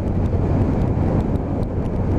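BMW F800's parallel-twin engine running steadily as the motorcycle rides along, with wind rushing over the microphone.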